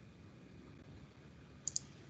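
Two quick computer mouse clicks in close succession near the end, a double-click, over faint room hiss.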